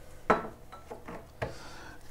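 A tea cup being handled and clinking, with two distinct knocks about a second apart and a few lighter taps between them.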